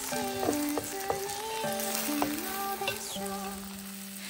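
An oatmeal okonomiyaki and egg frying in a nonstick pan with a steady sizzle. A spatula clicks against the pan a few times. Background music with a melody plays throughout.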